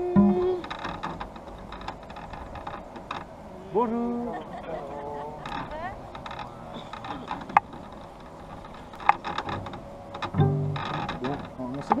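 A plucked cello note rings on and stops about half a second in. After it come quieter stretches of voices and light handling noise, with two sharp clicks.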